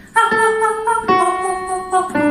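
A woman singing a vocal warm-up exercise, short laughing notes with a breathy 'h' onset, to electric keyboard accompaniment. Two held notes, the second lower.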